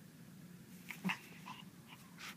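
Small chihuahua making a few short vocal sounds in a quick cluster about a second in, the loudest of them very brief.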